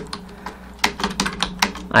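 Typing on a computer keyboard: a quick run of keystrokes in the second half.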